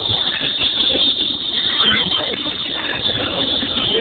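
Crowd of street marchers: indistinct voices and chatter over a steady background noise.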